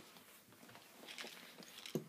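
Faint rustling and soft knocks of the contents shifting inside a Dooney & Bourke Logo Lock handbag as it is held open and rummaged through, with one sharper knock near the end.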